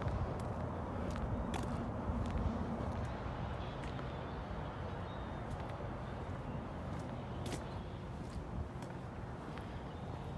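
Footsteps on asphalt with a few scattered sharp clicks, over a steady low outdoor rumble.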